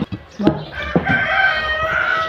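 A rooster crowing: one long, steady call that starts about half a second in, after a couple of short clicks.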